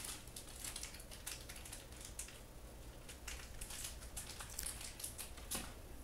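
Faint rustling and crinkling of tissue paper inside a cardboard shoebox as the shoes are unwrapped, a run of small irregular crackles.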